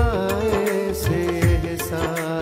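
A song: a male voice singing a wavering, ornamented melody over held accompanying tones and a drum beat.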